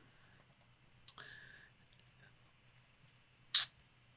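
Near silence, broken by a faint click about a second in and a short hiss near the end.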